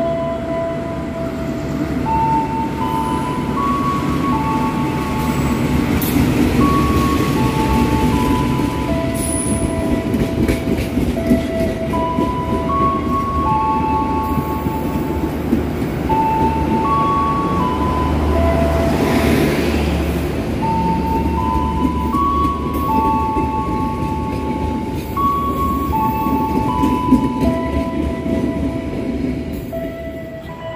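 A passenger train rolling into a station alongside the platform, with a steady rumble of wheels and engine that grows heavier about two-thirds of the way through. Over it a slow tune of clear single notes plays, about one note a second.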